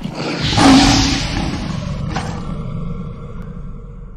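Tiger roar sound effect over a low rumble, loudest about half a second in and dying away over the next three seconds.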